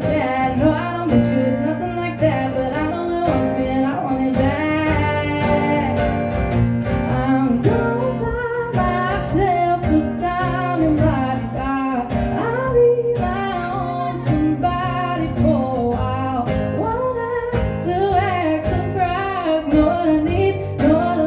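A woman singing a country-pop song to her own strummed acoustic guitar, performed live.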